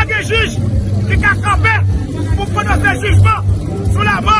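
A man speaking loudly and emphatically in short bursts, over crowd babble and a low steady hum.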